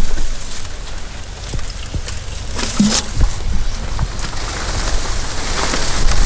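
Water poured from a plastic bucket into the hollowed-out centre of a cut banana pseudostem stump, a steady splashing pour with a few light knocks as the cavity fills.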